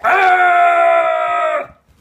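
A loud, shrill screech imitating a raptor, held at one pitch for about a second and a half and dipping slightly as it stops.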